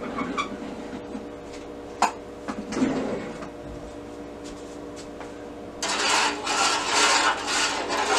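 Water being swished and splashed by hand in a metal baking pan to stir in Kool-Aid drink-mix powder, starting about six seconds in as a pulsing wash of splashing. Before it, a few light knocks over a low steady hum.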